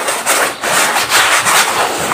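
Dry lumps of pure cement crushed and rubbed between the fingers in a bowl: a continuous gritty crunching, with a brief dip about half a second in.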